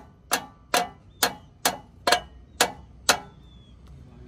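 Metal hand tool working on a truck's upper control arm ball joint: seven sharp metallic clicks with a short ring, about two a second.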